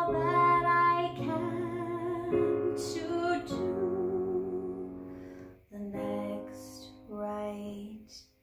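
A woman singing a slow ballad to her own digital piano accompaniment, holding one long note with vibrato around the middle. The sound dips briefly just before six seconds in, then two soft piano chords with voice follow.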